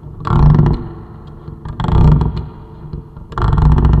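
Three loud hits about a second and a half apart. Each starts sharply with a deep rumble and a noisy crash on top, then dies away.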